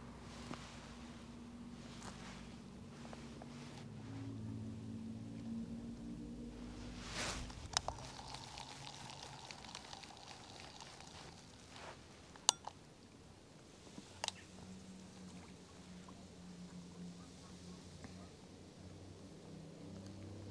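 Faint, distant drone of a Spitfire's piston engine as the aircraft performs aerobatics far off. It fades about seven seconds in and comes back in the last few seconds. A few sharp clicks sound in between.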